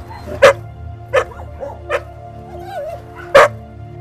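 Puppies barking in short, single yaps, four of them spaced roughly a second apart, the loudest near the end.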